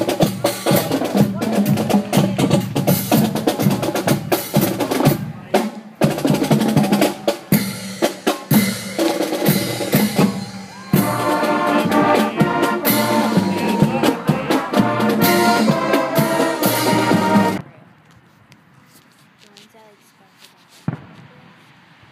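Marching band playing: brass horns over a drumline of snare and bass drums. The music cuts off suddenly about three-quarters of the way through, leaving quiet outdoor background with one sharp pop near the end.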